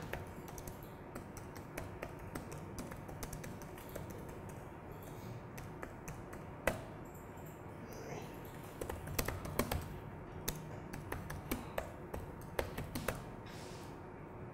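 Typing on an ASUS laptop keyboard: irregular key clicks, sparse at first, then in quick runs in the second half, over a faint steady room hum.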